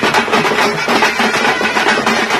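Tamte street drum band playing a fast, driving beat on big rope-tensioned bass drums and smaller stick-beaten drums, with a horn holding a steady melody over the drums.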